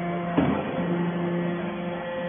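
Hydraulic power unit of a metal-chip briquetting press running with a steady hum. A single clunk comes about half a second in.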